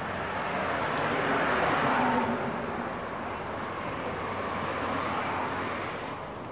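Street traffic on a city boulevard at night, with a car passing close by that grows loudest about two seconds in and then fades.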